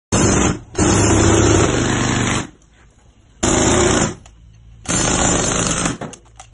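Air-powered jackhammer breaking up a concrete slab. It runs in four bursts with short pauses between them, the longest nearly two seconds.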